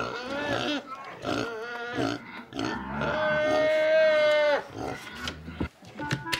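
Pot-bellied pet pigs squealing: a run of short rising-and-falling squeals, then one long steady squeal of about a second and a half, starting about three seconds in.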